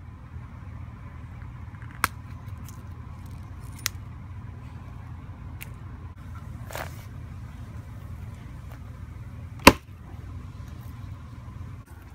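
Steady low engine rumble of road paving machinery working in the background, with a few sharp clicks scattered through it, the loudest about three-quarters of the way in.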